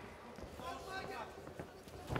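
Faint fight-arena ambience: a distant voice calls out about halfway through, over low crowd murmur and a few light taps.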